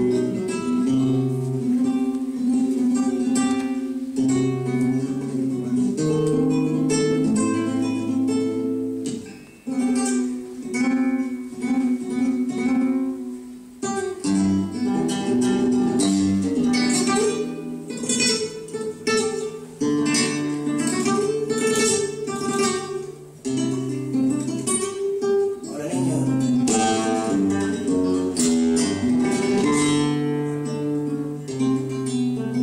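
Solo flamenco acoustic guitar playing the introduction to a granaína, with melodic single-note runs and held notes broken by bursts of strummed chords. The playing thins out briefly twice, about ten seconds in and again near two-thirds of the way through.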